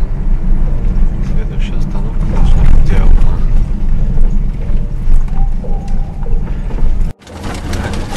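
Car cabin noise on a rough road, a heavy low rumble from the engine and tyres, with indistinct voices over it. It cuts off abruptly about seven seconds in, and a lighter rumble from inside a tuk-tuk follows.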